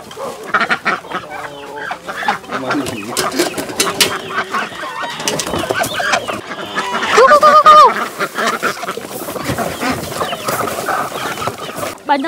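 A flock of chickens and ducks calling and clucking over scattered grain, with many short clicks of feed falling and pecking. One loud, drawn-out call about seven seconds in.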